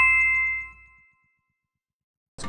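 Two-note ding sound effect, the second note lower and struck right at the start, both ringing out and fading within about a second, as a low music bed fades away. It marks the cut to an announcement title card.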